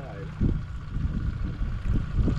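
Wind rumbling on the microphone aboard a boat on open water, with a steady high hum underneath and a brief voice at the start.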